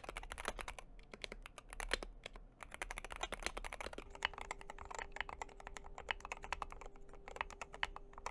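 Fast, continuous typing on a magnetic (Hall effect) switch keyboard, dense key clacks with the slightly rattly switch chatter typical of magnetic switches. A faint steady hum comes in about halfway through.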